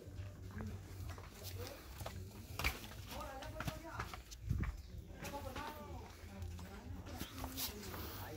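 Indistinct chatter of people talking nearby, with scattered knocks and scuffs of footsteps on a rocky path. A steady low rumble runs underneath.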